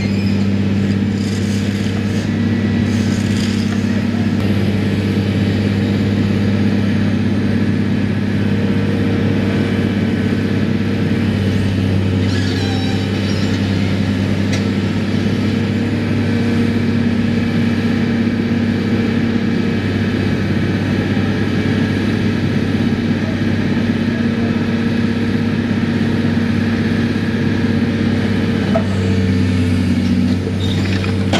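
Demolition excavator's diesel engine running under load at a steady, loud drone while its hydraulic arm works its grab, with a few faint clinks about twelve seconds in.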